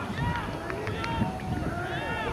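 Several players shouting and calling to each other across the field, heard from a distance, with a few short clicks near the middle.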